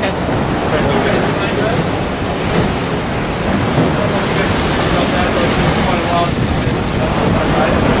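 Wind buffeting the microphone over the steady rush of choppy sea around a small boat.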